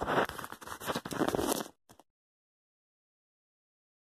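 Close, crackly rustling and crinkling handling noise for nearly two seconds, then the sound cuts off to complete silence.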